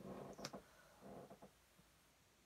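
Near silence, with a few faint clicks and rustles of handling in the first second and a half, then quiet room tone.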